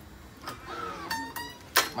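High-tension badminton string being pulled through and woven across a racket on a stringing machine. The taut string gives a short, guitar-like ringing twang about midway, followed near the end by a sharp snap.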